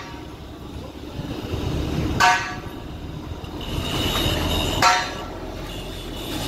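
Two short vehicle-horn toots about two and a half seconds apart, over a steady low rumble.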